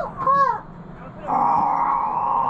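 Recorded soundtrack of a Three Bears animatronic scene. A bear character's spoken line ends, and about a second later a long, drawn-out bear cry begins and carries on.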